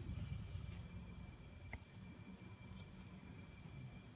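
Quiet hall room tone: a low rumble with a faint, steady high whine, and one faint click a little before the middle.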